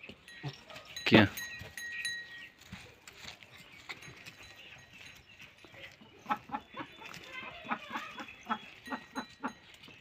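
A sheep eating silage: soft crunching chews that, in the second half, become a quick regular ticking of about three chews a second.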